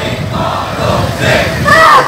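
Large rally crowd shouting together in a steady din. A louder pitched, gliding call cuts in near the end.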